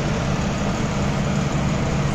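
Greenhouse ventilation fan running: a super loud, steady rushing noise with a low hum underneath.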